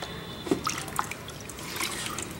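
Water being poured into a plastic tub, trickling and splashing, with a few sharp drips about half a second and a second in.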